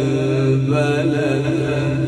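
A man reciting the Quran in the melodic, drawn-out tajwid style, holding one long steady note with slight wavering ornament in the upper part of the voice.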